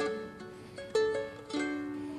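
Solo ukulele, three chords strummed and each left to ring and fade.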